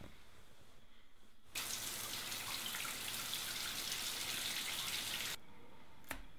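Water running from a bathroom tap into a sink for about four seconds, starting and stopping abruptly after a moment of quiet room tone.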